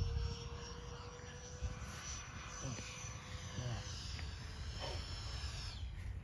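Distant whine of a Freewing Me 262 model's twin electric ducted fans, a high thin tone that shifts and falls in pitch near the end, over wind rumble on the microphone.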